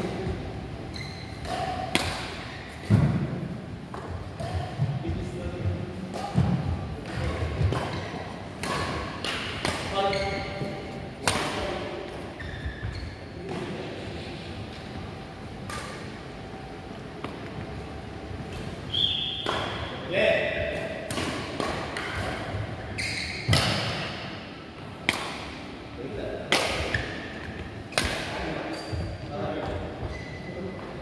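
Badminton rally in a large indoor hall: rackets striking the shuttlecock again and again at irregular intervals, with thuds of footfalls on the court, each hit echoing.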